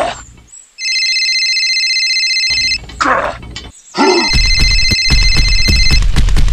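Phone ringtone sound effect: a steady electronic ring for about two seconds, then ringing again from about four seconds in over a fast beat. There is a short vocal exclamation before each ring.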